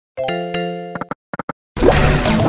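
Online slot machine sound effects from EGT's 100 Burning Hot: a chiming tone as a spin starts, a few short clicks as reels stop, then a loud, dense effect near the end as the wild symbols expand.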